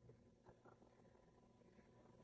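Near silence: a faint steady hum of room tone.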